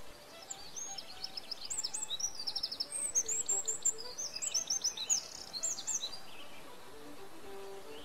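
A songbird sings a rapid, varied song of quick chirps and trills from about half a second in until about six seconds in, over soft background music.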